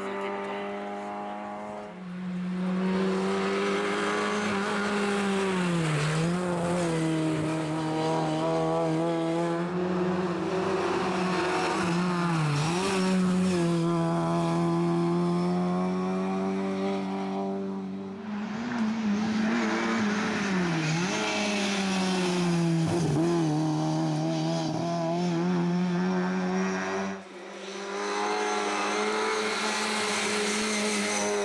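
Lada 2107 rally car's four-cylinder engine running hard at high revs, mostly steady in pitch, with several brief dips where the revs drop and climb again. The sound breaks off and resumes sharply a few times.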